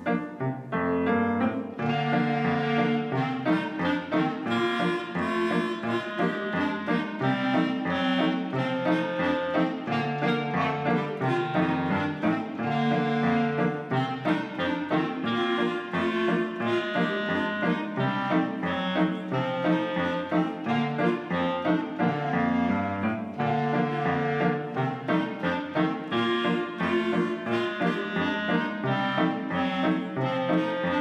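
A clarinet quartet of young players performing a tune together in several parts, with piano accompaniment.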